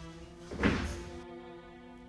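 Background music of held, sustained notes with a single deep thud about two-thirds of a second in, the loudest sound, ringing on briefly before the notes continue.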